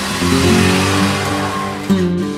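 A Honda CR-V with the 2.2 i-CTDi diesel engine drives past close by on a dirt forest track. Its engine and tyres on the dirt make a rushing noise that swells through the passing and drops away at the end, over acoustic guitar music.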